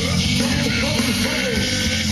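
Rock band playing live, loud and continuous, with a melodic line bending up and down over a steady bass and drum backing.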